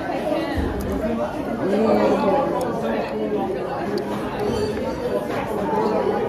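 Background chatter of several people talking at once in a busy restaurant dining room, with a dull low bump about half a second in.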